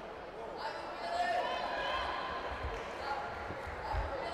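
Indistinct voices talking across a large, echoing sports hall, with several dull low thumps in the second half and one near the end.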